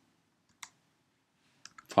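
A few faint clicks of computer keyboard keys: a single click about half a second in, then three quick clicks near the end.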